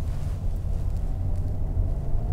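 Steady low rumble inside the cabin of a 2021 Mercedes-Benz S580 driving slowly: road and running noise heard through the closed cabin.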